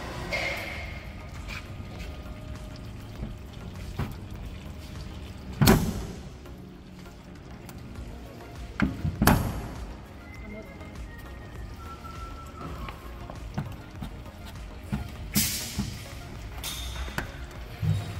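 A suction-cup dent puller is pulled on a pickup's dented steel door panel and pops loose with two sharp pops, about six and nine seconds in. Two shorter noisy bursts follow near the end.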